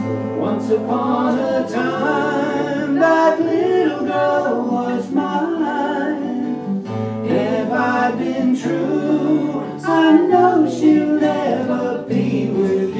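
Folk song performed live on two acoustic guitars with singing over the strummed chords.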